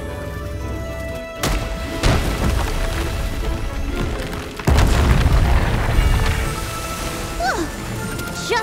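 Deep rumbling booms over background music, hitting suddenly about one and a half, two and nearly five seconds in; the last is the loudest and rumbles on. They are cartoon sound effects of the island quaking.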